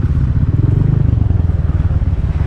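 Motorcycle engine idling steadily with a low, evenly pulsing note.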